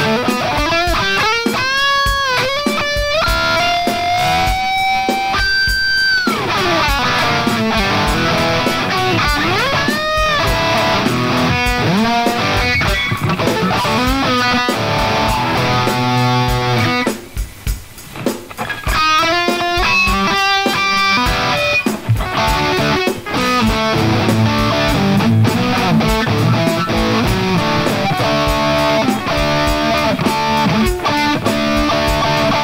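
Electric guitar playing a blues-rock lead: single-note lines with bent notes gliding up and down, held notes, and a short break a little past the middle.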